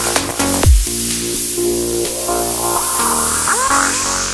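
Progressive psytrance track. The kick drum drops out about a second in, leaving held synth chords under a falling noise sweep, with gliding synth tones near the end.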